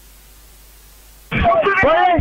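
Faint steady hiss from a radio-microphone link, then about a second in, a voice comes through it, thin and cut off at the top as over a radio.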